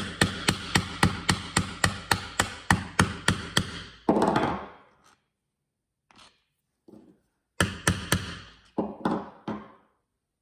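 Mallet striking a steel leatherworking tool held on thick leather, part of riveting a strap with copper rivets and burrs. A fast run of about a dozen sharp taps, roughly three or four a second, fills the first four seconds. A shorter run of about six taps comes near the end.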